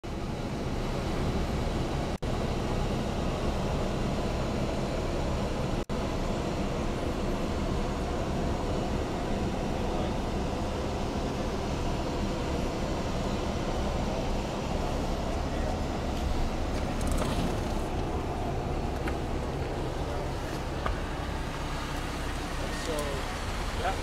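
Steady rumbling background noise of the kind picked up on a handheld microphone outdoors, with no distinct engine note. It cuts out twice very briefly, about two and six seconds in, and a short spoken 'yep' comes at the very end.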